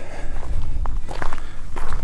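Footsteps of a person walking over grass and dirt, a few scattered light steps and clicks over a steady low rumble from the handheld phone being carried.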